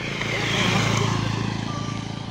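A motorcycle passing close by on a gravel track and riding away. Its engine hum and tyre rush swell to a peak a little under a second in, then slowly fade.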